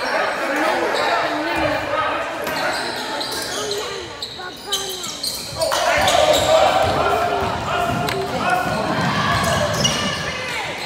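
Basketball bouncing on a hardwood gym floor amid overlapping shouts of players and spectators, echoing in the hall. The voices get louder a little past halfway.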